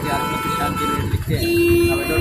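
Vehicle horns honking in street traffic: a higher-pitched horn held for about a second, then a lower horn near the end, over the rumble of engines.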